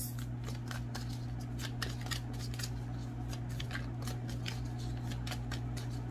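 A deck of tarot cards being shuffled and handled: a run of quick, irregular light clicks and snaps of card on card, over a steady low electrical hum.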